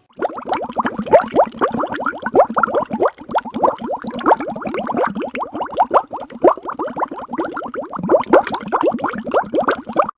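Loud, continuous bubbling: a rapid run of short plops that each rise in pitch, like liquid gurgling.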